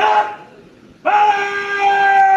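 A drill commander's drawn-out shouted word of command for a guard of honour: a brief sharp shout at the start, then from about a second in a long, loud call held on one pitch.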